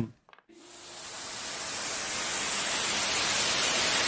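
A steady hiss of noise that fades in about half a second in and grows steadily louder for three seconds, a white-noise swell leading into music.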